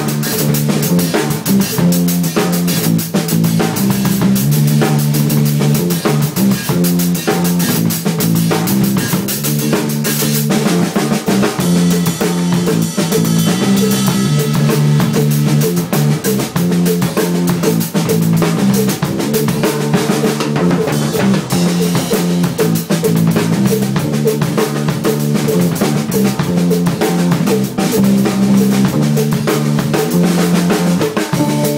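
Live funk played close up on a drum kit: a busy beat of kick, snare and cymbals over a repeating low-pitched guitar riff.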